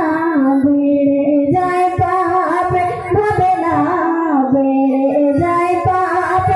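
A woman singing a Bengali gojol (Islamic devotional song) into a handheld microphone, her amplified voice holding long notes that bend and waver in pitch.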